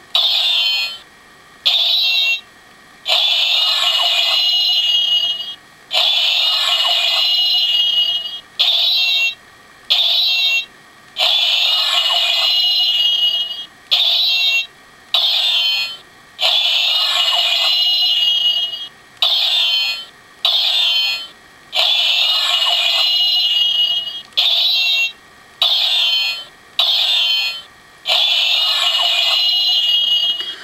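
Power Rangers Super Megaforce Deluxe Super Mega Saber toy playing its electronic sword-clanging sound effect through its built-in speaker, set off again and again as the blade is swung with no Ranger Key inserted. Nearly twenty clangs follow one another with short gaps, some brief and some ringing on for two seconds or more.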